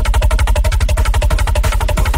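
Drum and bass music: a very fast drum roll, about sixteen hits a second, over a deep pulsing bass.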